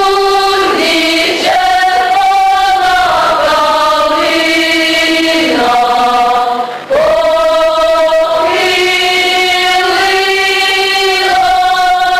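Mixed folk choir singing a Ukrainian folk song in long held chords. A brief break for breath comes a little past halfway.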